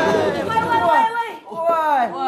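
People's voices talking or exclaiming over a background wash of sound that cuts off about a second in.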